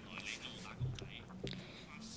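A pause in a man's speech: low room tone with faint, breathy, whisper-like voice sounds and a few soft clicks.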